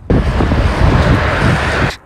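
Strong wind blowing across the microphone: a loud, deep rumble with a hiss above it.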